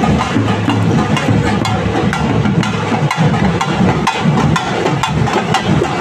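Procession drums, several of them beaten with sticks, playing a loud, fast and dense rhythm of sharp strokes. A low steady hum under the drumming stops about three seconds in.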